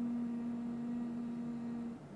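A woman humming one steady, even note for about two seconds, which stops abruptly at the end.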